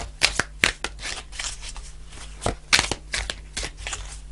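A deck of oracle cards being shuffled by hand: a run of irregular crisp snaps and rustles as the cards slap together.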